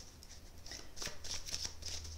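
A deck of oracle cards being shuffled by hand: a run of quick card flicks that picks up about half a second in.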